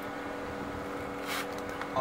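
Pool pump motor running with a steady electric hum, and a brief hiss about one and a half seconds in.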